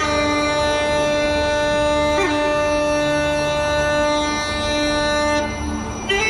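Uilleann pipes played solo: the chanter holds one long, steady low note with a quick grace-note flick about two seconds in, then the note ends shortly before a new one begins.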